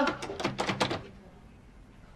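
Knuckles knocking on a hotel room door: a quick run of raps in the first second, then stopping.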